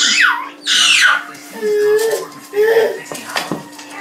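A toddler's voice: high squeals in the first second, then a few short babbled sounds with pauses between.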